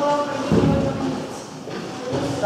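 Indistinct voices in a large gym hall, with no clear words.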